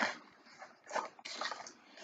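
A picture-book page being turned: a faint, brief rustle of paper about a second in.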